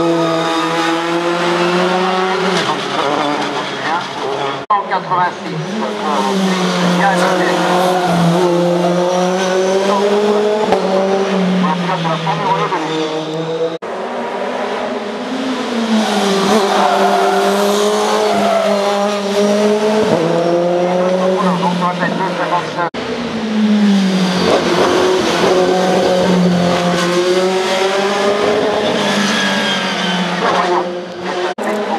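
Racing cars' engines revving hard, the pitch climbing and dropping again and again through gear changes and braking as each car passes through the bends. The sound breaks off abruptly and restarts three times, about 5, 14 and 23 seconds in, as a new car is heard.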